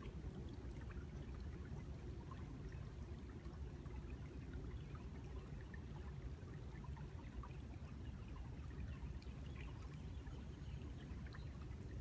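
Shallow woodland stream trickling, a faint steady rush of water with small scattered splashy ticks.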